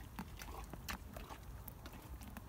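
Pony chewing stone fruit, a run of short, irregular wet crunching clicks.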